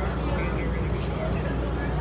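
Outdoor background ambience: a steady low rumble with faint voices talking in the background.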